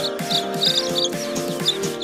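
Baby chicks peeping, a string of short, high chirps that make the loudest moments, over background music with sustained notes and a steady pulse.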